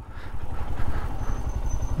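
Royal Enfield Scram 411's single-cylinder engine running at low revs, a steady low beat, heard from the rider's seat.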